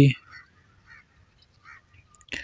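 Felt-tip marker scratching briefly on paper in a few faint short strokes as brackets are drawn, after the tail end of a spoken word.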